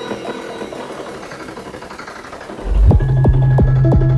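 Psychedelic trance DJ mix: a beatless stretch of layered synth texture, then, near the end, the kick drum and deep bass come back in and the music is suddenly much louder, with a steady driving beat.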